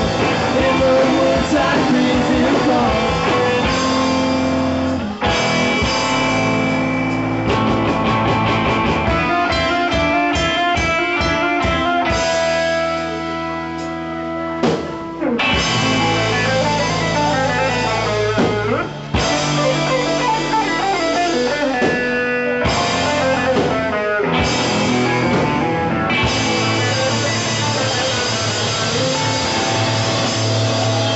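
Live psych-pop rock band playing: electric guitars, bass and drum kit. The song moves through a choppy, stop-start passage and a briefly sparser, quieter stretch about halfway, then the full band comes back in.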